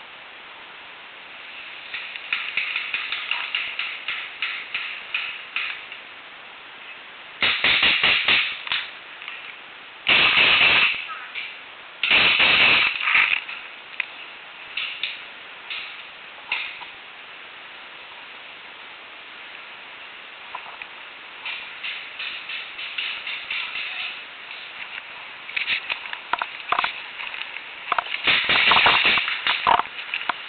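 Paintball markers firing in rapid strings of shots, with several bursts back and forth. The loudest and densest strings come about a third of the way in and again near the end, with lighter, more distant-sounding strings in between.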